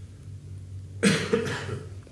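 A person coughs, a short sudden cough about halfway through, over a steady low hum in the room.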